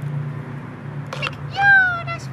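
A high, drawn-out mewing whine from an animal, falling slightly in pitch, starting about a second and a half in and the loudest sound here, over a steady low hum.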